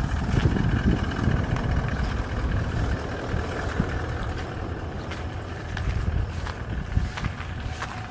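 Wind rumbling on the microphone, with footsteps swishing and crunching through dry grass.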